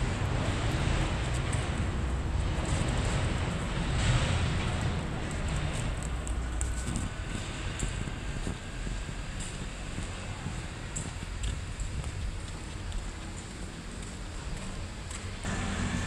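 Outdoor ambience dominated by wind rumbling and buffeting on the microphone, with a faint wash of urban traffic. The rumble drops away just before the end.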